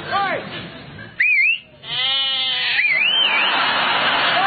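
A man's short shout, then a loud two-finger whistle that rises and falls, a sheep bleating, and a second rising-and-falling whistle: shepherd-style whistle calls to sheep.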